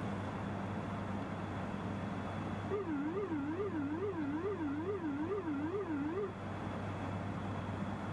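Steady cockpit background hum. About three seconds in, an electronic warbling tone starts, rising and falling in pitch about twice a second, and stops after roughly three and a half seconds.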